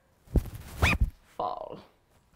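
A woman speaking playfully: a quick vocal sound rising in pitch about a second in, then the word "Fall" near the end.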